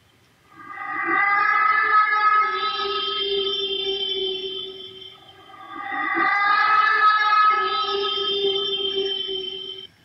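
Eerie ambient sound effect of ghostly voices and noises: layered, sustained, wavering tones over a steady low hum, swelling up twice and cutting off abruptly near the end.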